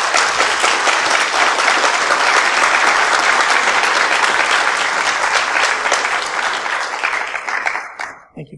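Audience applauding, a dense steady clapping that dies away near the end.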